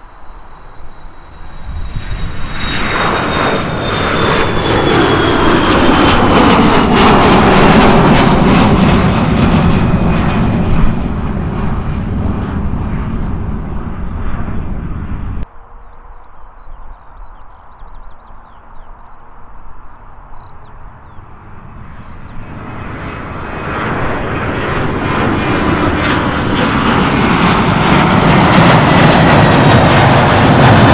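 Boeing 737 twin-jet engines at take-off power as the aircraft climbs out: the roar builds, and a high whine falls in pitch as it passes overhead. It cuts off suddenly about halfway through. Then a second 737, a Ryanair 737-800, builds to a loud take-off roar near the end.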